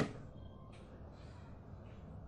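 A single loud, harsh bird call right at the start, fading within a fraction of a second, followed by a few faint short scratchy sounds over a steady low background.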